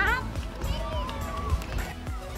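A young child's high-pitched squeal right at the start, then more wordless voice sounds, over background music.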